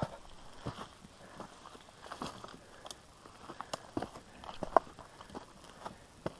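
Footsteps and bicycle tyres crunching over loose stones as a bike is pushed up a steep rocky slope: scattered, irregular crunches and clicks, one a little louder near the end.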